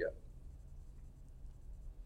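Room tone: a faint, steady low hum, just after a man's voice ends a word at the start.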